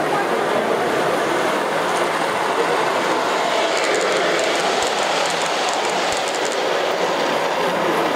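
O gauge model Amtrak Acela Express train rolling along three-rail track, its wheels making a steady rumble, with light clicking in the middle.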